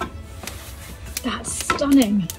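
Freshly lit wood fire crackling in an open fireplace, with scattered sharp pops. A brief voice sound comes near the end.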